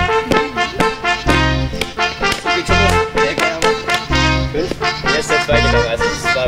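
Accordion-led folk dance music with a steady beat of alternating bass notes and chords.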